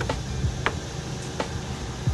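A few sharp clicks, about two-thirds of a second apart, over a steady low hum.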